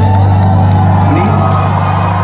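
Concert audience cheering and whooping at the end of a sung ballad line, over a low note held steadily by the accompaniment.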